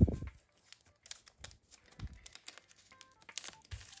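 Faint plastic rustling and a few light, scattered clicks as a photocard is slid into a clear plastic binder sleeve and the page is pressed flat, with a dull thump at the very start.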